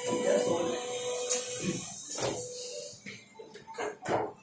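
A foosball game in play: a few sharp clacks of the ball and rod figures striking, over background music with a singing voice that fades toward the end.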